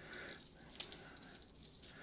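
Faint handling of a stainless-steel dive watch and its link bracelet in the hands, with one light click a little before the middle.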